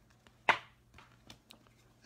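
Trading cards being handled and slipped into plastic sleeves: one sharp, brief swish about half a second in, followed by a few faint light clicks.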